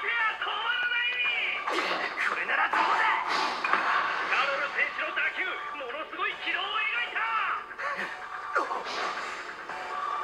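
Anime soundtrack playing: excited Japanese dialogue from a match announcer over background music, with a few sharp hits.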